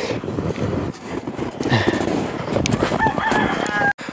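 A rooster crowing in the second half, its call cut off abruptly near the end, over footsteps crunching through deep snow.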